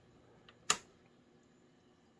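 A single sharp click, the power toggle switch on a 1967 Fender Bandmaster amplifier head being flipped on, with a fainter tick just before it; otherwise quiet.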